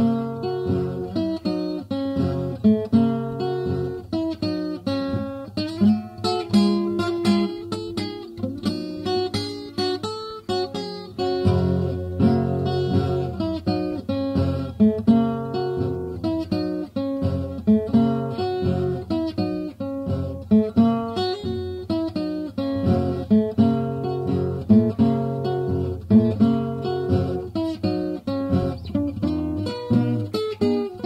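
Solo acoustic guitar playing an instrumental blues, fingerpicked: a steady bass line under quick runs of plucked treble notes.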